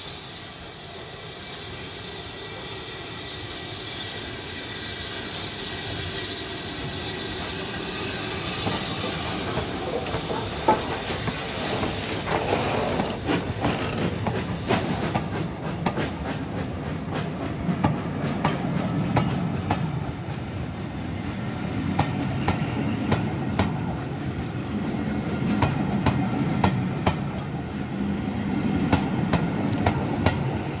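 BR Standard Class 9F steam locomotive 92134 moving slowly on the track with a hiss of steam. Its wheels click irregularly over rail joints and points from about ten seconds in, and the sound grows louder as it draws nearer.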